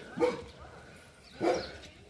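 A dog barking twice, about a second and a quarter apart.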